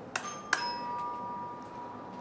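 Doorbell chiming two notes, ding-dong: a higher note, then a lower one about half a second later that rings on for about two seconds.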